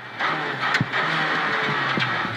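Renault Clio R3's two-litre four-cylinder rally engine heard from inside the cabin, accelerating hard out of a slow corner. A single sharp crack about three-quarters of a second in.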